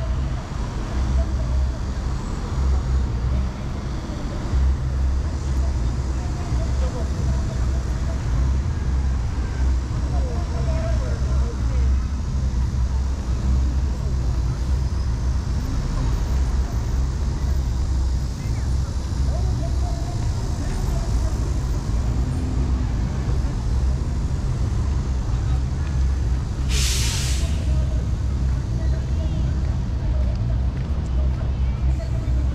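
City traffic on a busy road, running steadily with a deep rumble, mixed with passers-by talking. Near the end a sharp hiss lasting about a second, typical of a bus's air brakes releasing.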